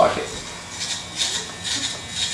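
Corded electric hair clippers cutting through a thick head of hair, with repeated rasping strokes about twice a second over the clipper's steady hum.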